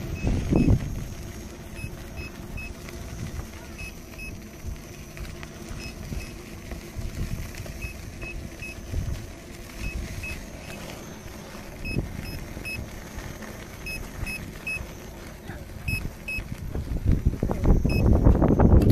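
Low, uneven wind and handling rumble on an action camera's microphone, with faint short high beeps that come in twos and threes every second or two.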